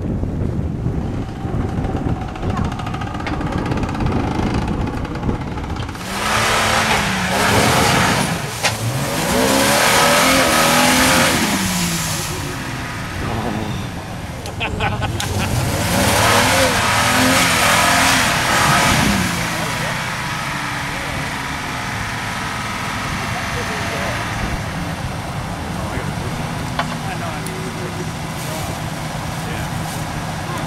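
Modified Jeep Wrangler's engine revving in repeated bursts, pitch climbing and falling, as it claws up a steep dirt hill, then running steadier at lower revs for the last ten seconds.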